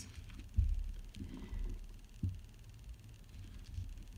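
Low handling rumble from hands turning a plastic-wrapped bar of soap, with a soft thump about half a second in and a short knock a little after two seconds.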